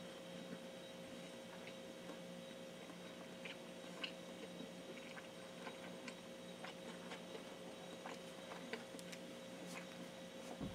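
Faint chewing of a cheeseburger: scattered soft mouth clicks and smacks, with a steady faint electrical hum beneath.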